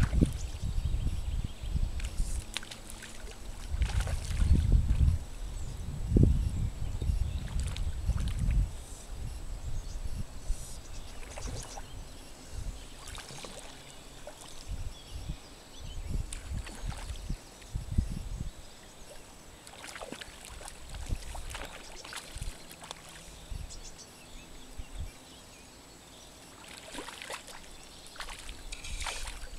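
Wind buffeting the microphone in gusts, heaviest over the first nine seconds, over small wind-driven waves lapping and splashing at the lake's edge.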